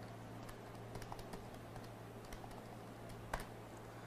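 Faint typing on a computer keyboard: irregular key clicks with one louder click near the end, over a steady low hum.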